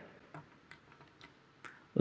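A pause in speech: low room tone with a few faint, scattered clicks.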